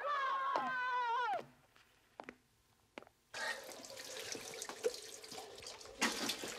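A long, high wavering call that falls away after about a second and a half, then a brief hush with a couple of faint clicks. From about three seconds in, a tap runs steadily into a bathroom washbasin.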